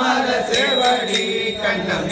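A group of voices chanting Tamil devotional hymns together in unison, as in a mutrothal recitation. A few sharp metallic strikes with ringing tails fall along the chant.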